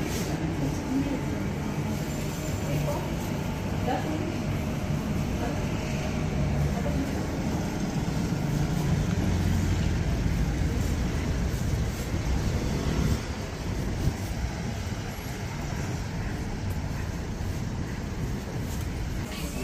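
Busy street ambience: road traffic with a low engine rumble that is loudest around the middle and drops away abruptly about two-thirds through, over indistinct background voices. A single sharp click comes just after the drop.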